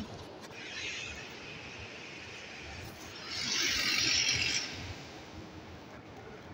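City street background noise, with a rushing hiss that swells about three seconds in and fades about a second and a half later.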